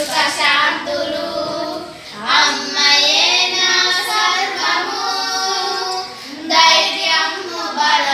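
Three young girls singing a song together in unison without accompaniment, holding long notes, with short breaks between lines about two seconds in and again past six seconds.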